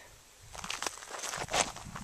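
Footsteps on dry grass and brush: irregular soft crackles and thuds that start about half a second in.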